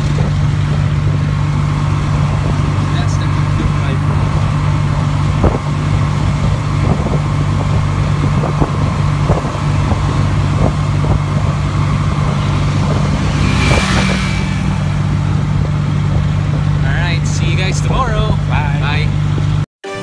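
Tuk-tuk's small engine running at a steady pace while riding in the passenger cab, a low even hum with road noise. It cuts off abruptly just before the end.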